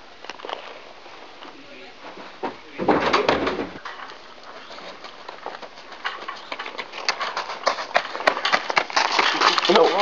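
Crunching on a gravel path: irregular clicks that grow louder and denser over the last few seconds. About three seconds in there is a short, loud, low rumbling burst.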